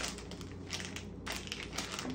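Plastic gummy candy packaging crinkling as the bag is pulled open and handled, a run of short crackles.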